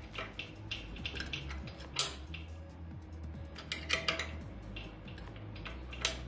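Ratchet wrench tightening the bolts of a pellet-stove burn pot: scattered metal clicks, a sharp one about two seconds in and a short run of clicks a couple of seconds later, over a faint low hum.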